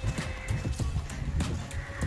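Footsteps at a walking pace, a string of short irregular knocks, over wind rumble on the microphone, with faint background music underneath.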